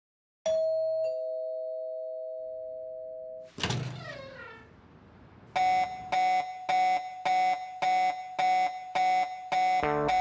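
Two-tone ding-dong doorbell chime, high note then low, ringing out and fading over about three seconds. Then comes a hit with a falling sweep, and from about halfway a pulsing musical tone repeats about twice a second.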